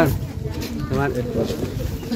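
A mix of people's voices talking.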